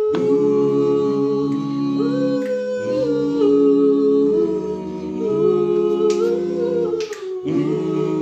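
A group of voices singing a cappella, holding long chords in harmony that shift from one to the next. A few sharp clicks sound over the singing, most of them in the second half.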